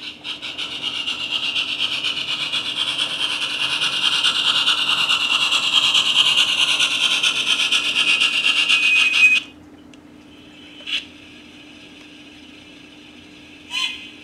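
On30 scale model locomotive with two flat cars running along the track: a rasping whir of motor, gears and metal wheels with fast even ticking, growing louder as the train approaches. It stops abruptly about nine and a half seconds in as the train halts.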